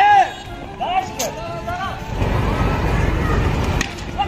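Players calling out on a cricket field while the ball is in play, with a sharp click about a second in. From about halfway a low rumbling noise sets in, typical of wind or handling on the microphone as the camera swings.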